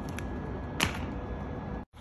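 Steady outdoor background noise with a faint steady hum, broken about a second in by one short, sharp sound, the loudest moment; the sound drops out completely for an instant near the end.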